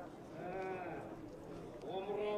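A man's voice holding one short, drawn-out vowel about half a second long, over faint background noise.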